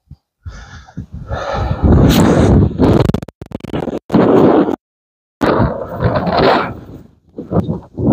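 Strong wind buffeting the microphone in loud, rough gusts, cut off abruptly by a few short dead silences.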